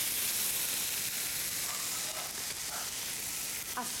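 Chicken strips and sliced button mushrooms sizzling steadily in hot olive oil in a non-stick frying pan over high heat, stirred with a silicone spatula. The chicken is being seared only until it loses its raw colour.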